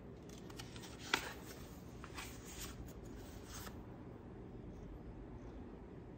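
A picture book's pages being turned by hand: quiet paper rustling with one sharp flick of a page about a second in and a few lighter rustles after it.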